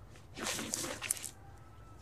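A spade cutting into dry soil to lever up a blue yarrow plant: a rough scraping crunch of about a second, starting half a second in, with a few sharp crackles near its end.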